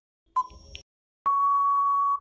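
Quiz countdown timer sound effect: a short clicking beep about half a second in, then a long steady beep from a little over a second in, signalling that time is up.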